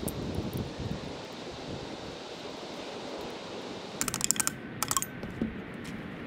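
Steady wind rumble on the microphone, with two quick runs of small clicks and taps, about four seconds and five seconds in, from hand tools being handled at the motor pulley.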